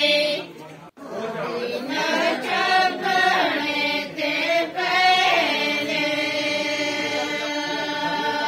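A group of women singing a devotional bhajan together, their voices rising and falling in pitch, with a steady held note under and after the singing. The sound drops out briefly about a second in.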